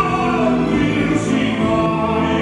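A male operatic pop tenor singing sustained, bending notes into a microphone over musical accompaniment.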